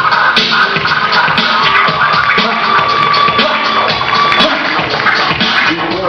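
DJ scratching a vinyl record on a turntable over a backing beat, the scratches sliding rapidly up and down in pitch.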